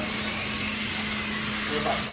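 Telepresence robot built on a PR2 caster drive base, its drive motors running with a steady whir and hum as it rolls past.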